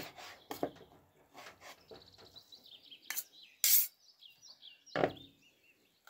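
Knife slicing raw pike fillet on a plastic cutting board, with a fork: scattered short knocks, clicks and clinks of the metal against the board, the loudest a short sharp scrape about three and a half seconds in. A small bird chirps in the background from about two seconds in.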